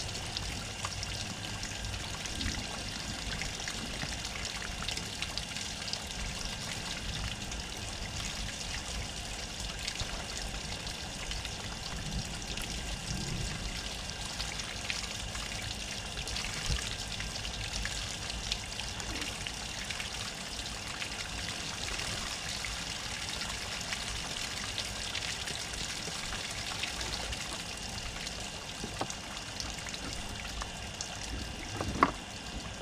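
Water running from a garden hose and splashing over a plucked chicken carcass on a plastic table as it is rinsed, a steady trickling pour.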